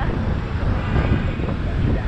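Wind rushing over the microphone of a camera on a moving scooter, mixed with the steady noise of street traffic.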